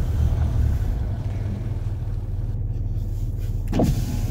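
Land Rover Discovery 3's engine running steadily at low revs under gentle throttle, a low rumble, while its mud-clogged tyres spin with little grip on a steep muddy slope and the vehicle makes little headway.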